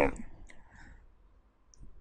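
A pause in a man's speech: his last word trails off, then the quiet holds a couple of faint short clicks and a soft breath.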